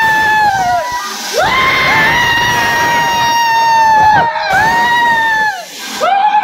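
People screaming in fright: a run of long, high-pitched screams, each held for a second or two and then falling off, with two voices overlapping in the middle.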